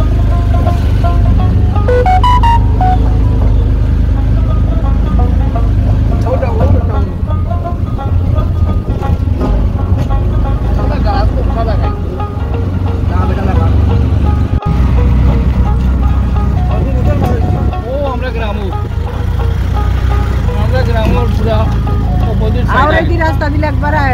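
Steady low rumble of a moving vehicle running along a road, with voices and snatches of music faintly over it.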